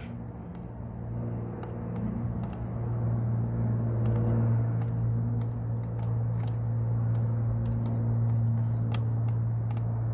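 Porsche 911 Carrera S power seat's electric motors running as the seat adjusts: a steady hum that grows louder over the first few seconds and then holds, with scattered light clicks throughout.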